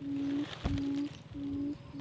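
Electronic bird-caller playing a buttonquail lure call: a low, steady hooting note repeated about three times with short gaps. There is a soft low bump about a third of the way in.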